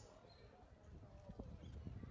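Quiet outdoor ambience: faint, distant voices of people in a crowd over a low rumble of wind on the microphone, with a few soft knocks that sound like footsteps.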